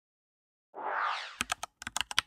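Sound effect for an animated logo: silence, then about three-quarters of a second in a short rising whoosh, followed by a quick irregular run of sharp clicks, like typing.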